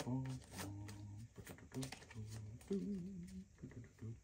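A small packet of playing cards being mixed by hand, with soft card clicks and snaps, under a low, wordless humming or murmuring voice.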